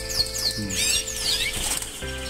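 Canaries chirping in an aviary: many short, high, falling chirps in quick succession.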